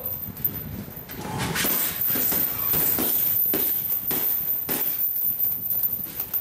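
Boxing gloves striking heavy punching bags: an irregular series of sharp thuds, at times two or three a second.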